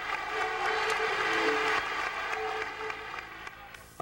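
Crowd cheering and applauding, fading out toward the end.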